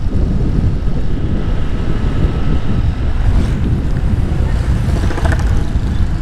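Steady wind rush on the microphone of a moving motorcycle, with the motorcycle running underneath.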